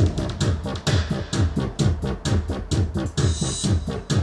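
Electronic dubstep playback: a synthesized wobble bass from the Albino 3 synth, its rate set to eighth notes, pulsing in falling-pitch strokes about four times a second over a programmed drum beat. A short burst of hiss, like a cymbal, comes near the end.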